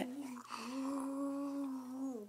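A voice humming one long, level note for about a second and a half, dropping in pitch as it ends, after a short hummed sound at the start.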